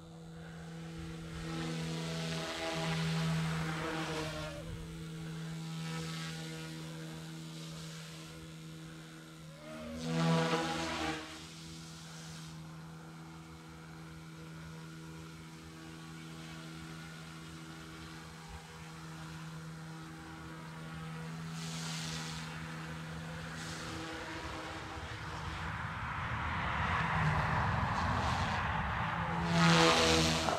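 OMPHOBBY M2 V2 micro electric RC helicopter in flight: a steady whine of its spinning rotors and motors. It swells louder, with swooping pitch, as it passes close about two seconds in, again about ten seconds in, and as it flies overhead near the end.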